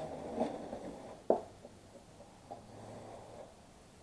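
Fiberglass aircraft nose bowl sections being handled by hand: faint rubbing and shifting, with one sharp knock a little over a second in.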